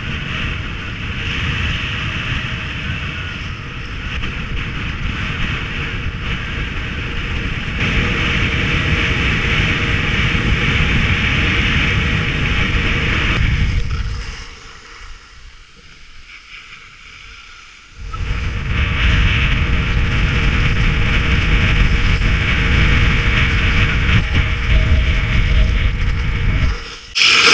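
Wind buffeting the microphone and the hiss of skis sliding over packed snow during a downhill run. It drops away sharply for a few seconds a little past halfway, then comes back as loud as before.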